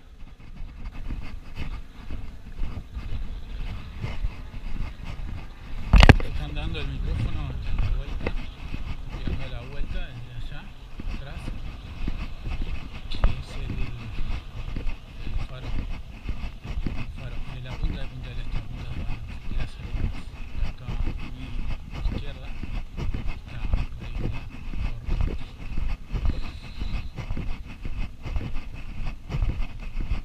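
Outdoor ambience recorded while walking, with a dense, uneven low rumble and people's voices nearby. A single sharp, loud knock comes about six seconds in.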